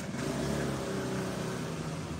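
A motor vehicle engine running close by: a steady drone that swells in at the start.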